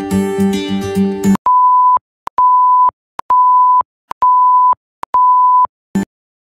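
Acoustic guitar music cuts off about a second and a half in. Five steady high beeps of one pitch follow, each about half a second long and evenly spaced, with clicks at their starts and ends. A short click closes it.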